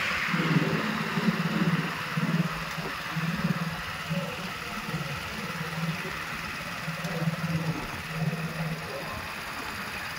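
A motor vehicle's engine running, its low hum rising and falling unevenly.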